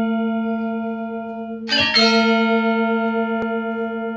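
Bell chime of an intro jingle: a bell tone rings on and slowly fades, then is struck again twice in quick succession about two seconds in and rings on.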